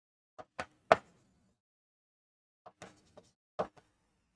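Marker pen tapping and scratching on a whiteboard as words are written: three short taps in the first second and a few more in the last second and a half.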